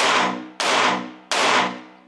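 Three pistol shots from a red-dot handgun, a first shot and two quick follow-ups with splits of about 0.67 and 0.72 seconds, each echoing and fading in an indoor range bay.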